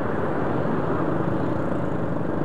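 Steady noise of a motorcycle being ridden in slow traffic: the engine running and wind on the microphone blended into one level sound, without change or distinct events.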